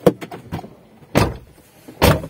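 A few short, irregular thumps and rubbing sounds inside a car, the loudest about a second in.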